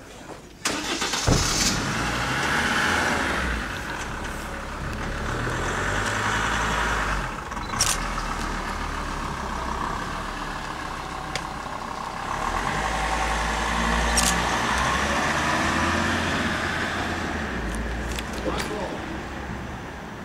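A car's engine and tyres on the paved square. The sound sets in sharply about a second in and keeps running as the SUV rolls slowly past.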